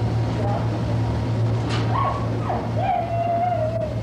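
Steady low hum under general room noise, with a person's voice drawn out in the last second or so.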